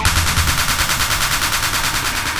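Dark psytrance track in a breakdown: the kick drum and bass drop out, leaving a rapid, evenly repeating high rattle like a machine-gun burst, played as part of the music.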